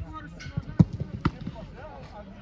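Footballs being struck during goalkeeper shooting drills on artificial turf: several sharp thuds in quick succession, the loudest a little under a second in.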